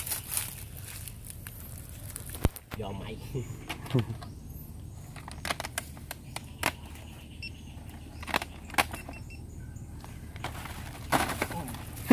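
Scattered sharp clicks and knocks with a light metallic rattle as a sheet-metal snake box trap with a wire-mesh door is handled and lifted upright.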